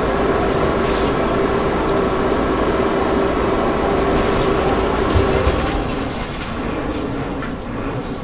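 Steady, loud rushing roar of a burning bus, with gas jetting out of its ruptured gas cylinder. There is one low thump about five seconds in, and the roar eases a little after about six seconds.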